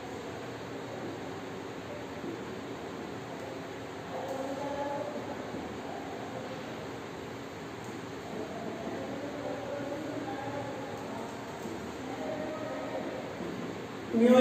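Steady background hiss of room noise, with a faint voice murmuring briefly about four seconds in and again for a few seconds later on.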